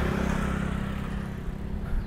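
Motor scooter engine running close by, a steady hum that slowly fades as it pulls away.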